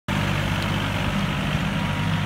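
John Deere 850 compact tractor's three-cylinder diesel engine running at a steady, even speed as the tractor drives off.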